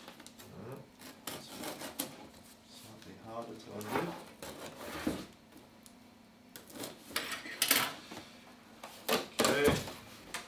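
Scissors drawn along the packing-tape seam of a cardboard box, scraping and slitting the tape in short strokes, then the cardboard flaps pulled open with louder rustling and scraping near the end.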